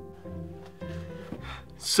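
Background music of held string-instrument notes, with a man starting to speak right at the end.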